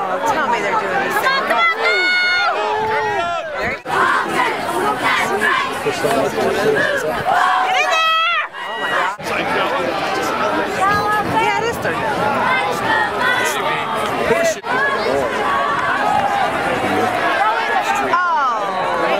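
Many voices of a football sideline crowd shouting and calling over one another, with loud drawn-out yells about two seconds in and again about eight seconds in.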